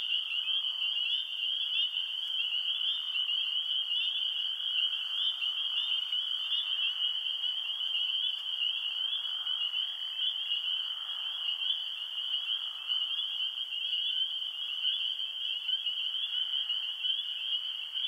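Night-time frog chorus sound effect: a steady, continuous high trilling that holds an even level throughout.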